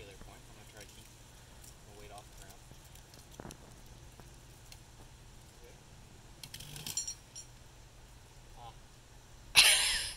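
A knife cutting through the strands of a rope loaded with a person's weight, with faint scratching strokes, a short jingle of metal climbing gear about seven seconds in, and a loud sharp rasp just before the end.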